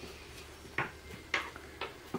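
Handling noises from a wooden dowel and satin ribbon being worked by hand: three brief light clicks or taps, about half a second apart, in the second half.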